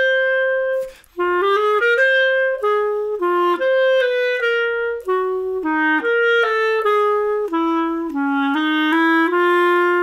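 Solo clarinet playing a swung jazz-waltz melody in a smooth, slurred, gliding style rather than staccato. A held note gives way to a short break about a second in, then a run of connected notes ends on a held note.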